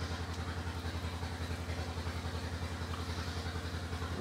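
A small engine running steadily at idle: a low hum with a rapid, even pulsing that does not change.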